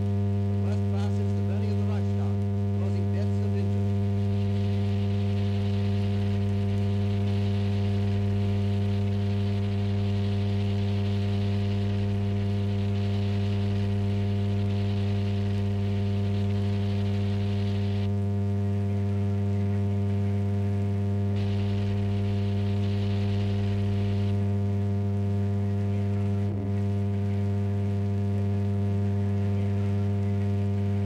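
A steady low electrical hum with a stack of overtones, unchanging throughout, with a faint hiss that comes and goes over it.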